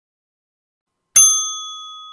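A single bright bell ding, the sound effect of a notification bell being clicked, struck about a second in and ringing out as it slowly fades.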